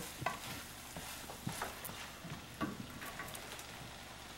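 Ground meat and beans frying faintly in a skillet while a spatula stirs and scrapes through them, with a few scattered clicks of the utensil on the pan.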